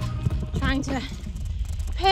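Low wind rumble on a phone's microphone while riding a bicycle, with a brief vocal sound about half a second in.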